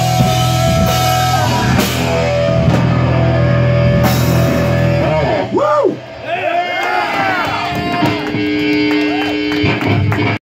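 Rock band playing live through small amplifiers: distorted electric guitar, bass and drum kit. Held chords give way about halfway through to sweeping, bent guitar notes that rise and fall, with a brief drop in loudness, before held notes return near the end.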